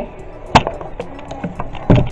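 Camera handling noise: two sharp knocks about a second and a half apart, the second deeper and louder, as the handheld camera is grabbed and moved about.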